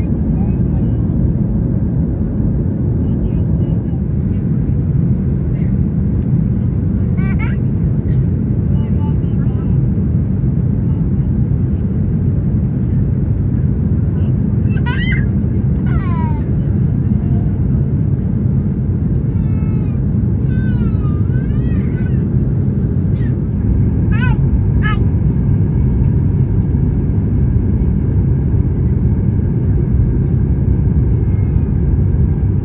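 Cabin noise of a Boeing 737 MAX 8 on approach, heard from a window seat: a loud, steady low rumble of the CFM LEAP-1B engines and airflow. Over it, a few faint voices rise and fall now and then.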